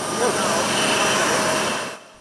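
Steady jet whine and rushing noise of aircraft engines on an airport apron, with several high steady tones over the rush; it cuts off sharply near the end.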